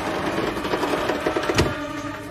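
Cartoon sound effect of a machine running as a lever is worked: a steady hum with a fast rattle of clicks in the middle and one sharp click about a second and a half in.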